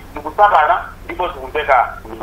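Speech: a person talking in a thin, telephone-like voice, stumbling over a word.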